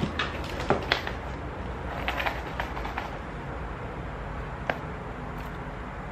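Handling sounds of small items being sorted: a few light clicks and knocks, most of them in the first second and only scattered ones after, over a low steady rumble in the background.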